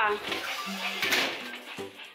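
Background music with short low bass notes, under a hissing noise that swells about a second in and then fades.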